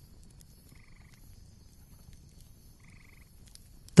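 Two short trilled animal calls about two seconds apart, faint over quiet background noise.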